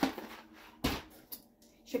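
A grocery item knocks down onto a kitchen counter about a second in, with a fainter knock half a second later, as groceries are handled and swapped.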